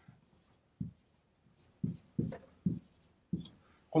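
Marker pen writing on a whiteboard: about five short, separate strokes, each a brief tap and scratch of the felt tip against the board, as music notes are drawn.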